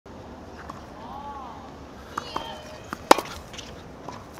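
Tennis racquet strings hitting a ball: a few sharp pops in the second half, the loudest about three seconds in.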